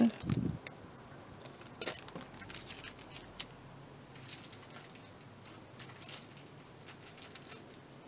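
Faint, scattered rustles and light clicks of plastic-wrapped craft packets being handled and laid down on a pile.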